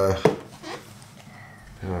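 A man's speech trailing off, then a lull and a hesitant 'uh' near the end. A single light click of small plastic toy parts being handled comes about a quarter second in.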